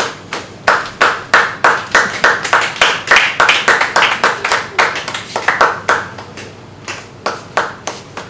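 Hands clapping in a quick steady rhythm, about three claps a second, thinning to a few scattered claps near the end.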